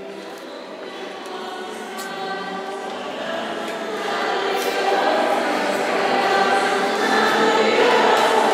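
Several voices singing together in a church, with long held notes in the reverberant hall, growing louder about four seconds in.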